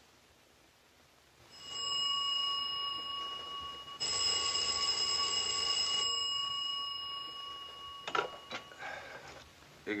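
Telephone bell ringing steadily for about six seconds, getting louder about four seconds in. It stops at about eight seconds in, followed by a few short knocks as the receiver is picked up.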